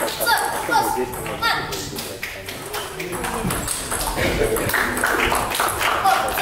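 Table tennis balls clicking off paddles and table tops in quick irregular taps, over a background of voices.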